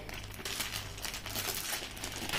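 Large plastic vacuum storage bag crinkling faintly as hands handle and open its zip-seal edge.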